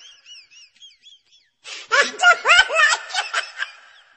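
A person's wordless voice, loud and high-pitched, with pitch sliding up and down, starting about one and a half seconds in and lasting about two seconds. Before it, a faint high warbling.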